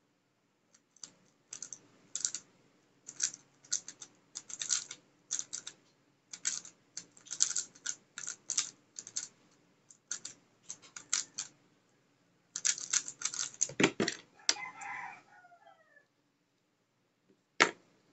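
Plastic MF3RS stickerless 3x3 speedcube being turned at speed during a timed solve: rapid clusters of layer-turn clicks with short pauses between them, a heavier thump about 14 seconds in, and one sharp knock near the end.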